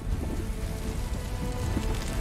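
Film soundtrack: held orchestral notes over a deep rumble, with a dense crackle of grit and small stones stirring on the ground, growing toward the end.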